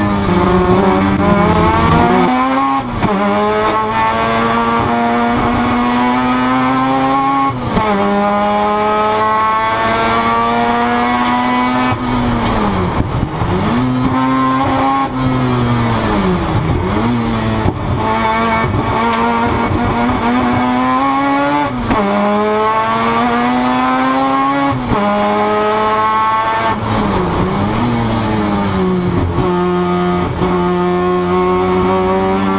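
Mazda RX-7's 13B rotary engine at racing speed, heard inside the cabin: loud, rising in pitch as it pulls through the revs, then dropping sharply at each gear change or lift-off, about ten times over the lap.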